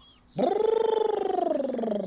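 A man's long, rasping drawn-out vocal sound that starts about half a second in and slowly sinks in pitch for nearly two seconds.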